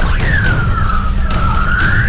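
Dramatic film background score: a low pulsing bass under a synthesized swooping tone that dips in pitch and rises again over about two seconds.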